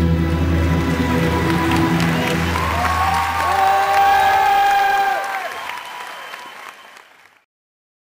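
Soundtrack music with a heavy bass line, then a long held note about three seconds in, before the whole mix fades out to silence near the end.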